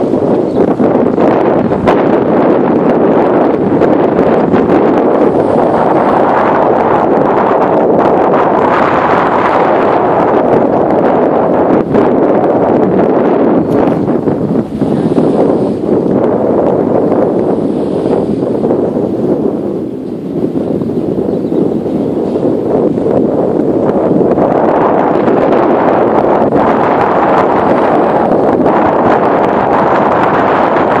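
Loud rushing wind on the microphone, steady with slow swells and a brief easing about twenty seconds in.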